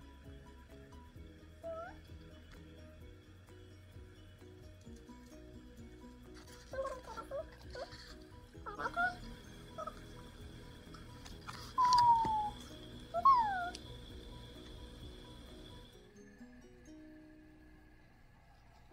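Light background music with a repeating pattern of notes, stopping about two seconds before the end. Over it, from about seven seconds in, come several short high squeaky calls that fall in pitch, the loudest two about twelve and thirteen seconds in.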